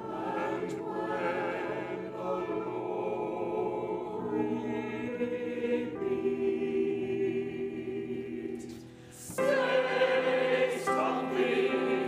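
Mixed choir singing held chords. About nine seconds in the sound drops away briefly, then the choir comes back in louder and fuller.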